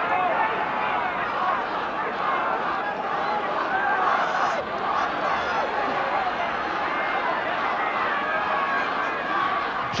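Football crowd in the stands talking and calling out: a steady babble of many voices, none standing out.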